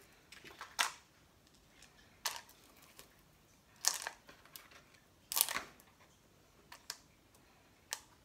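Small stones and bits of moss and dirt being picked through by hand and put into a small plastic cup: a handful of scattered clicks and short rustles, with quiet between.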